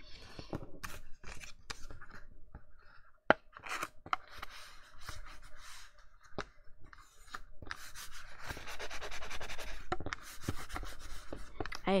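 Folded cardstock handled and pressed by hand: rustling and rubbing of card with scattered light taps, one sharp tap about three seconds in, and a longer stretch of rubbing near the end.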